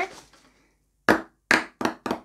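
Plastic ping-pong balls dropped onto a table and bouncing: from about a second in, a run of sharp, light clicks that come closer and closer together.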